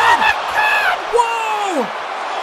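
A man shouting drawn-out excited exclamations: a long "God!" at the start, then about a second in a second long cry that slides down in pitch.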